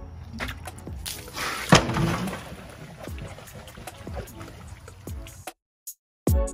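Water sloshing and pouring out of a steel propane tank as it is emptied, with a sharp knock about two seconds in, over background music. The sound cuts out shortly before the end.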